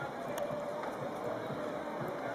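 Steady outdoor background noise with faint, indistinct voices mixed into it.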